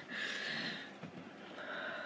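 A woman's soft breaths, two of them: one in the first second and another starting after a short pause.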